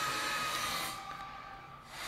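Movie trailer soundtrack: a steady hiss-like drone with a faint high tone, thinning out about a second in as the trailer fades to black.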